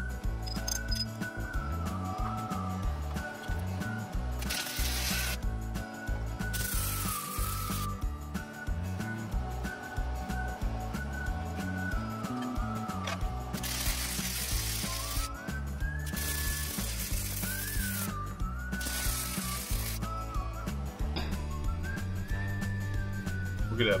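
Background music with a gliding lead melody over steady bass notes. Five separate bursts of stick-welding arc crackle, each about a second long, come in from about four seconds in as the billet's seams are tack-welded.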